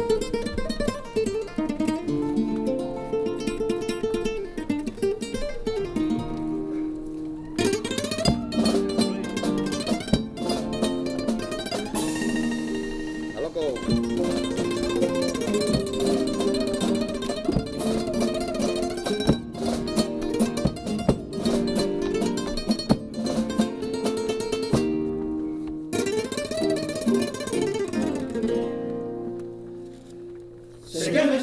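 Spanish guitar playing the introduction to a Cádiz carnival comparsa's pasodoble. Picked notes come first, then from about seven seconds in fast strummed chords, easing briefly near the end.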